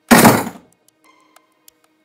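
A door slamming once: a single loud, heavy thud near the start that dies away within half a second, over soft background music.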